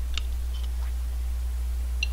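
A few faint mouth and spoon clicks as a man eats a spoonful of curry, the sharpest about a moment in, over a steady low electrical hum on the recording.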